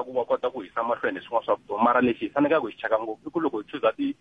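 Speech only: a caller talking over a telephone line, the voice thin and narrow-sounding.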